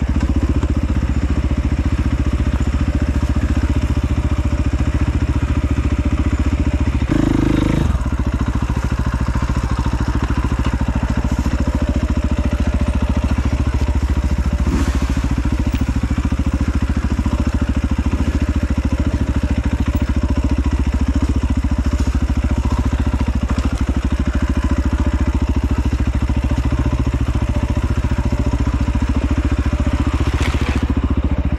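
Dirt bike engine running steadily as the bike is ridden along a trail, heard from on board, with a short louder patch about seven seconds in.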